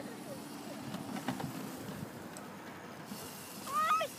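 MX500 electric dirt bike's motor and chain drive giving a steady low whir as it rides over grass, with a few faint ticks. Near the end, a child's short high rising call.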